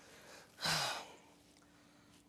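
A man's heavy sigh, one breathy exhale about half a second long, a little past half a second in, after straining to drag a heavy man seated on a rug.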